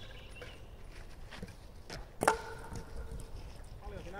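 A wooden kyykkä throwing bat lands with a single sharp clack about two seconds in, then rings briefly with a hollow wooden tone.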